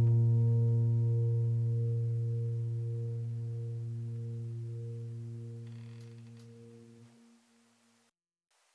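Background music: a low sustained piano chord slowly dying away, cut off about seven seconds in.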